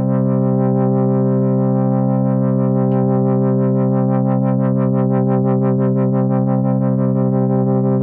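Korg opsix synthesizer holding one sawtooth note through the operator filter, its brightness wobbling quickly about six or seven times a second. The fast wobble comes from an LFO on the filter operator's cutoff, running over a slower sweep from the master filter.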